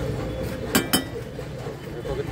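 Two quick metallic clinks of a metal spatula against a frying pan, about a fifth of a second apart and about three-quarters of a second in, each with a short ring.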